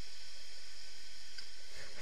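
Steady outdoor background hiss, with a faint click about one and a half seconds in.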